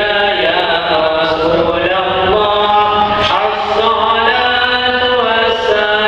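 Islamic devotional chanting: a sung melody of long held notes that step up and down in pitch about once a second, without pause.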